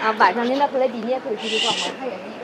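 People's voices talking, with a short hiss near the end.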